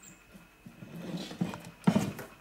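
Faint rustling and small knocks from a handheld camera being moved, with one sharp click just before the end.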